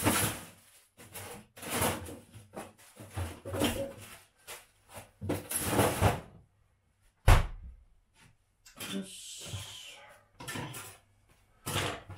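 Household handling sounds in a small kitchen: a run of short knocks and clatters, then one sharp thump about seven seconds in, then about a second and a half of rustling.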